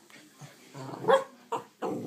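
A small dog barking, a short bark about a second in and another near the end.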